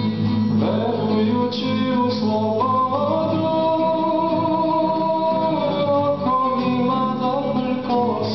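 A man singing a slow spiritual song, holding long notes, to his own classical guitar accompaniment.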